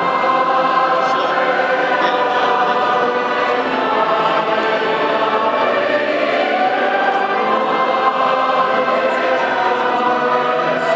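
A congregation and choir singing a hymn together in sustained, unbroken phrases, in a large reverberant church.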